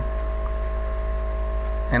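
A steady low hum with a few faint, even tones above it, unchanging throughout.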